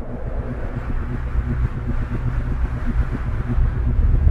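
Intro sound effect: a low, rumbling electronic swell with a fast flickering crackle, growing steadily louder.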